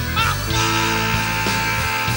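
Live blues-rock band playing an instrumental passage: keyboard chords held over bass guitar and drums, with one long high note sustained through most of it.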